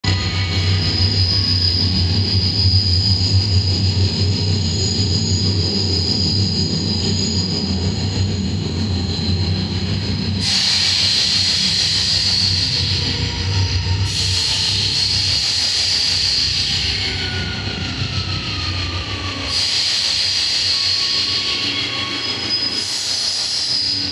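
Subway train running, with a steady low rumble and a high wheel squeal. A hiss of noise swells in abruptly at about ten, fourteen and nineteen seconds in, and a falling whine comes a little past the middle.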